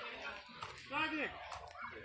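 Voices talking and exclaiming, with one loud rising-and-falling call about halfway through.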